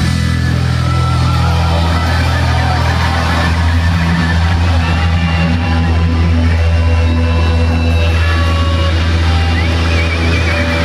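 Live punk rock band playing loud: distorted electric guitars, bass and drums, with heavy, steady low end.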